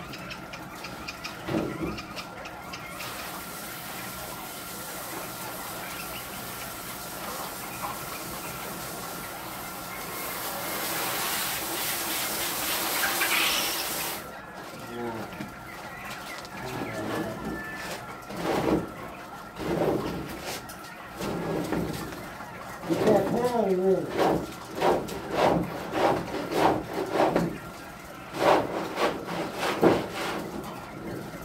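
Water spraying from a hose for about ten seconds, growing louder before it cuts off suddenly. After it, indistinct voices and short knocks.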